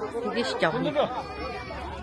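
Background chatter: several people talking at once, with no single voice standing out.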